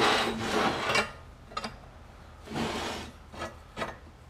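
Cut steel pieces sliding and scraping across a metal table top in two scrapes, the louder one at the start and another about two and a half seconds in, with a few light metal clinks as they are set against each other.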